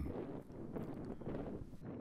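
Faint outdoor ambience: a steady low rumble of wind on the microphone.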